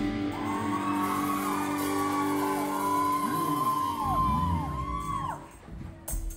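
Live rock band letting a chord ring out, with a singer's wordless wail bending up and down in pitch over it; the sound dies away about five and a half seconds in.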